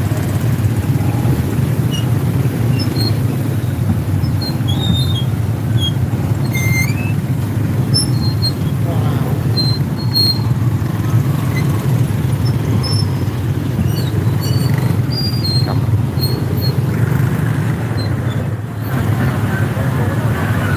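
Many motorbike engines idling and creeping along in a traffic jam, a steady low engine rumble, with scattered short high-pitched squeaks on top.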